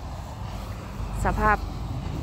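Wind buffeting the microphone as a low rumble, strongest around the middle.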